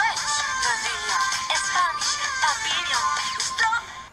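Meme song playing: high-pitched, synthetic-sounding singing with gliding pitch over a backing track, fading out near the end.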